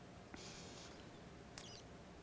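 Near silence: room tone, with a faint brief hiss about half a second in and a faint high squeak a little past the middle.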